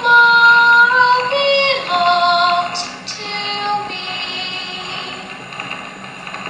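A voice singing long held notes that change pitch every second or so, with music. It is loudest for the first two seconds, then softer.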